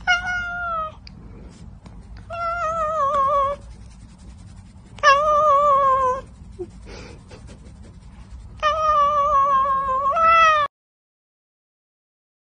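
Domestic cat meowing loudly: four long drawn-out meows a second or so apart, each sagging a little in pitch toward its end. A shorter fifth meow follows straight after the last, then the sound breaks off suddenly.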